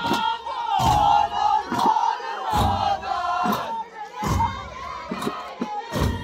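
Ahwash: a large group of men chanting together over big frame drums. A deep drum stroke falls about every second and three-quarters, with lighter strokes between.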